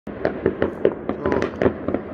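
New Year's fireworks and firecrackers going off in a rapid, irregular string of bangs, several a second.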